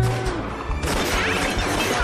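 Cartoon saloon-shootout sound effects over action music. There is crashing throughout, with bottles smashing on the bar and a loud crash about a second in.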